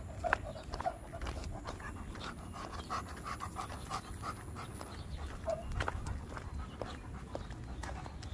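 Alaskan Malamute panting in quick, short breaths while walking on a leash, with scattered light clicks.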